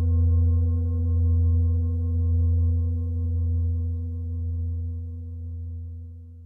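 A large Tibetan singing bowl resting on the lower back rings on after a strike: a deep hum with several higher overtones, wavering slowly in loudness and fading toward the end.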